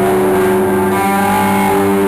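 Distorted electric guitar played loud through Marshall amplifiers, holding long sustained notes that change pitch a couple of times.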